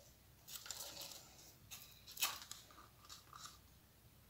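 Faint scrapes and clicks of a wooden stir stick and thin plastic cups being handled as acrylic paint is scooped and poured from cup to cup, with one louder scrape about two seconds in.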